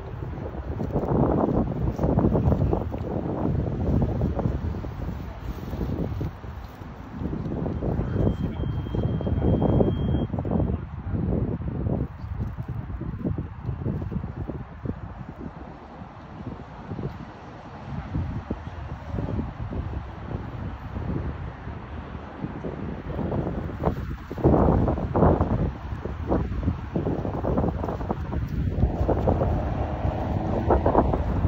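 Wind buffeting the phone's microphone in uneven gusts, a low rumble that swells and fades, strongest about a second in and again from about 24 seconds on.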